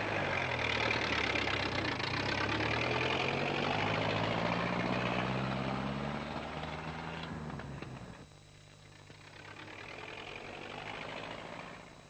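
Vintage open car's engine running as the car drives off, its note drifting slowly higher over a broad noisy wash. About eight seconds in it drops abruptly to a quieter, steady engine drone.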